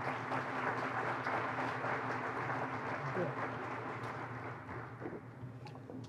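Audience applauding, the clapping thinning out and dying away over the last second or two.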